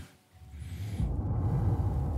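A low rumble that fades in and builds over the first second, then holds steady.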